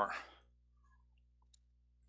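A man's voice trailing off, then near silence with a few faint clicks.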